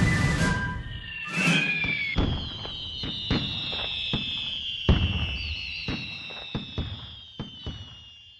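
Fife-and-drum music breaks off about half a second in. A whistling firework rocket goes up, followed by a string of firework bangs and crackles with high whistles running over them. The sound gradually fades out near the end.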